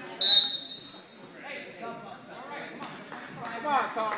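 Referee's whistle blown once, a short sharp blast about a quarter second in, stopping the wrestling action, with voices calling around it.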